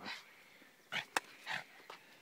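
A pug making a few short, breathy dog sounds while nosing at the ground, with one sharp click just after a second in.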